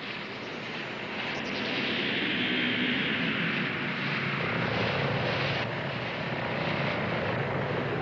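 Flying-saucer sound effect: a steady rushing drone with a low hum underneath. It swells about one and a half seconds in.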